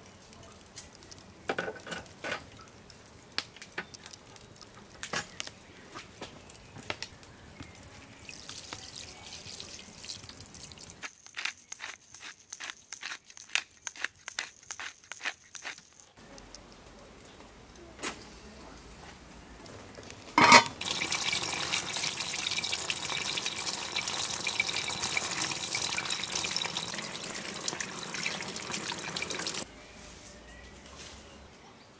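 Scattered light crackles and ticks, then about five seconds of rapid, even clicking from a pepper grinder seasoning potatoes in a pot of water. About twenty seconds in comes a thump, followed by a steady rushing hiss of water that stops just before the end.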